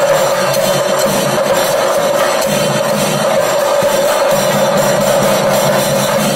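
Chenda drum ensemble played with sticks in a fast, dense, unbroken rhythm, the kind of temple drumming that accompanies a thidambu dance. A steady held tone runs through it.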